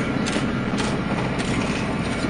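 Hägglunds tracked all-terrain vehicle driving through shallow water, heard from inside the cabin. A steady engine and drivetrain drone runs underneath, with a short clatter about every half second.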